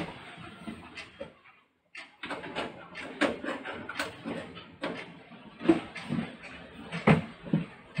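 Irregular light clicks and knocks of a hand handling a desktop computer tower, broken by a short dead-silent gap about two seconds in.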